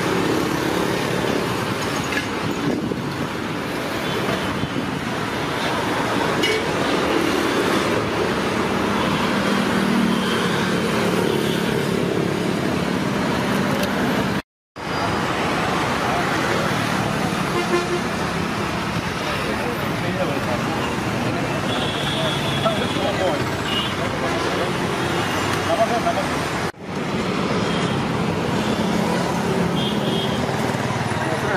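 Busy road traffic: a steady wash of passing cars and motorbikes, with short vehicle horn toots twice in the second half. The sound drops out completely for a moment about halfway.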